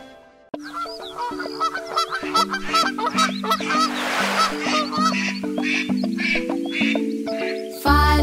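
Cartoon duck quacks, a quick run of short calls one after another, over a gentle instrumental music intro with held notes.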